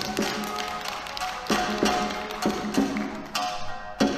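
Shamisen and shakuhachi playing the instrumental introduction to an Akita folk song: sharp plucked shamisen notes, each with the plectrum's tap on the skin, over a held shakuhachi tone.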